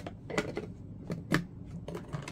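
Clear plastic 3x5 index-card box and its snap lid being handled on a tabletop: four light plastic clicks and taps, the sharpest a little past halfway.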